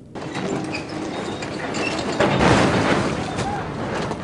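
Steady mechanical noise of a stone saw cutting a marble block, building up and loudest a little past halfway.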